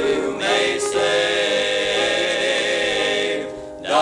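Male gospel quartet singing a hymn in close harmony, the held chord fading away near the end before the next phrase begins.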